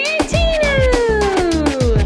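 Upbeat novelty birthday song with a steady drum beat; a meow-like voice holds one long note that slides down in pitch.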